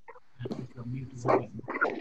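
A person's voice coming through a video call, without words clear enough to make out, over a low hum.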